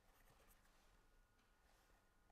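Near silence: the faint scratch of a pen writing on paper.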